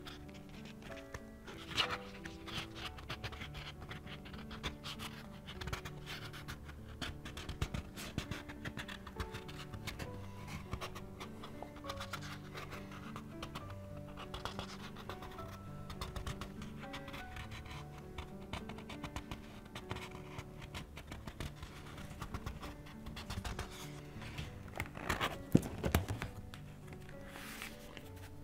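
Paper rustling and crackling as the pages of a spiral-bound sketch pad are lifted and turned, over soft background music with sustained low notes. There is a louder burst of paper handling near the end.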